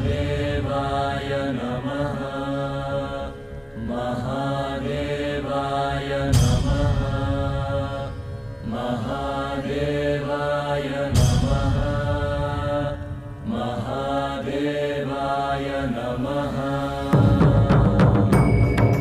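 A chanted mantra with musical backing, sung in long sustained phrases of about five seconds with short breaks between them. A deep low boom opens a new phrase about every five seconds.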